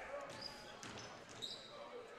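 A basketball being dribbled on a hardwood gym floor, heard faintly over the murmur of the crowd, with two short high sneaker squeaks.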